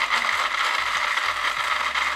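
Atomberg 550 W BLDC-motor mixer grinder running in coarse mode, its chutney-jar blades grinding coconut pieces with a little water. A steady whir with a light rattle of pieces in the steel jar.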